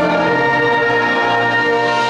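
Concert band of brass and woodwinds playing slow, sustained chords, with the bass moving to a new chord partway through.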